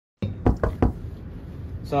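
Three quick knuckle knocks on a door, about half a second in, asking to come in. A man's voice starts near the end.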